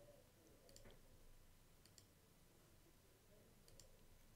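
Near silence with a few faint computer mouse clicks, some in quick pairs, over low room tone.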